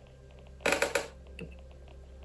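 Metal coffee scoop tapped several times in quick succession against a cup to knock the powder out, a little over half a second in, followed by one lighter knock.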